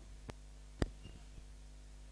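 Low steady electrical hum on the commentary sound line, broken by one sharp click a little under a second in and a fainter tick shortly before it.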